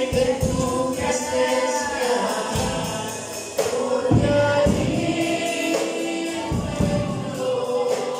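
A boy singing a gospel song with a strummed acoustic guitar accompaniment, holding long notes.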